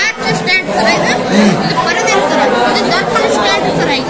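Many overlapping voices chattering at once, with no single speaker standing out.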